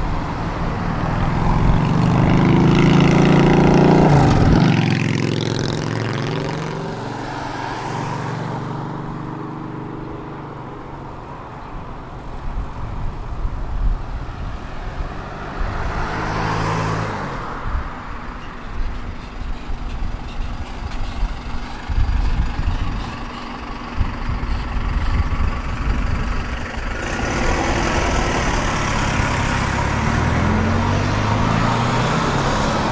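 Tram under way: its motor whine rises in pitch over the first few seconds as it gathers speed. It then runs on with a steady rumble, and cars pass on the road alongside.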